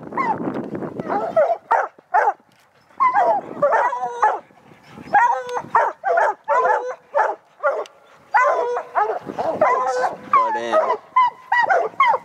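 Several hunting hounds baying treed, a dense run of short overlapping barks and bawls with a couple of brief lulls: the pack has a bear up the tree.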